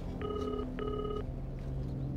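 Telephone ringback tone: one double ring, two short steady tone bursts with a brief gap between, heard while a mobile phone call waits to be answered. A low steady hum runs underneath.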